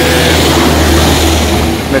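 Engine noise from a vehicle, louder than the talk around it, swelling toward the middle and easing off near the end, over a steady low hum.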